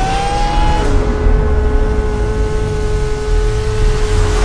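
Kart engine sound in an animated film's soundtrack: an engine whine rising in pitch through the first second, then holding one steady note over a deep rumble.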